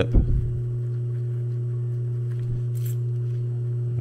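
Steady low electric hum, with faint small clicks and a brief soft hiss from nylon webbing being folded and handled by hand.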